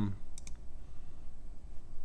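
Two quick computer mouse clicks close together, about half a second in.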